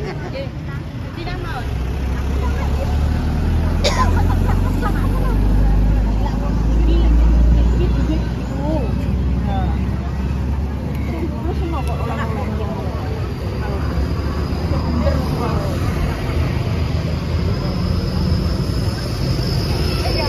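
Low engine rumble of a motor vehicle close by, building up, loudest about a third of the way in, then fading away, under the chatter of a market crowd. A thin, steady high whine comes in past the middle.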